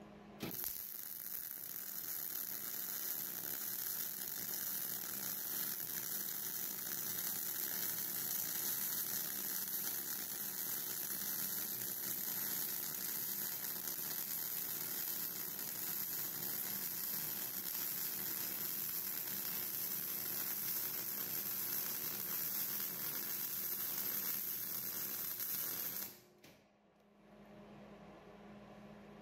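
MIG (GMAW) welding arc with 0.035 in ER70S-6 wire, running one continuous bead along the outside corner joint of two steel plates. It starts abruptly about half a second in, runs steadily, and cuts off about two seconds before the end when the trigger is released.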